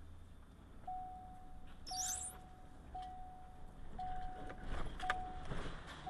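An electronic warning beep repeating about once a second, each beep one steady tone held for most of a second, starting about a second in, over a car's low rolling rumble. A brief high squeak comes about two seconds in and a few clicks near the end.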